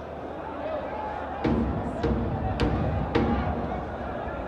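Four evenly spaced, booming drum beats, about two a second, starting a second and a half in, over a background of voices and murmur in a large open stadium.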